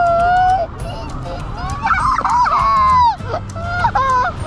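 A child's high-pitched squealing: one short held squeal at the start, then a longer wavering squeal from about two seconds in to about three.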